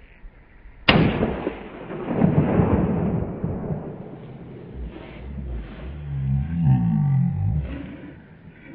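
A single 12-gauge pump-action shotgun shot about a second in, its report rolling away over the next two seconds or so.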